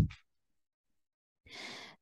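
Near silence, then a woman's short intake of breath, about half a second long, near the end.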